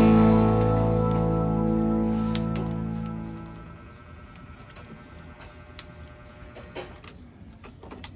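Rock music ends on a held guitar chord that rings and fades out over the first half. After that a wood fire in a brick oven crackles, with scattered sharp pops.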